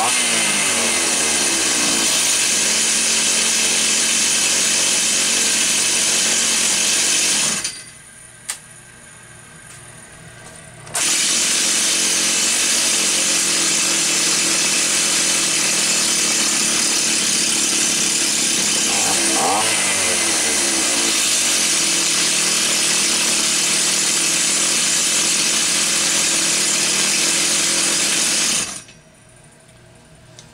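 Stihl 028 AV Super two-stroke chainsaw engine running at a steady, very low idle, with one quick rev up and back down about two-thirds of the way through. It drops out for about three seconds around eight seconds in, then runs again until it is shut off near the end. The low, steady idle and clean acceleration are, to the mechanic, the sign that the engine does not have low compression.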